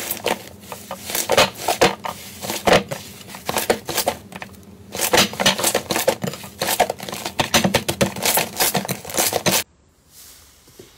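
Large puffy green slime squeezed and stretched by hand, giving dense, irregular crackling and popping clicks in rapid clusters. The sound cuts off suddenly near the end.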